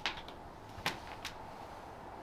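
Quiet room tone with a few faint, sharp clicks: one at the start, a clearer one a little under a second in, and a fainter one shortly after.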